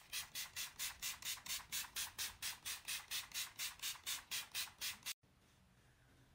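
Pump-spray bottle of facial collagen mist sprayed over and over in quick succession: a run of short hissy puffs, about four a second, stopping abruptly about five seconds in.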